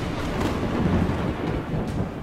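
Rolling thunder sound effect: a steady low rumble that drops away near the end.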